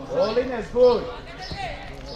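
Two shouted calls from footballers on the pitch, each rising and falling in pitch, the second the louder.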